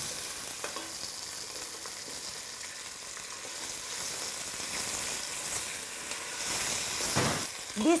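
Diced potatoes, onion and guanciale sizzling in hot oil and rendered pork fat in a stainless steel pot while being stirred with a wooden spoon, a steady frying hiss with a few light knocks of the spoon.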